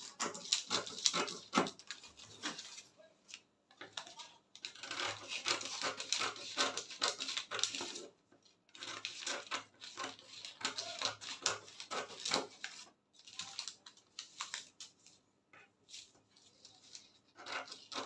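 Scissors snipping through brown pattern paper, a run of quick crisp cuts with paper crackle. The cutting comes in several bursts of a few seconds, with short pauses between them.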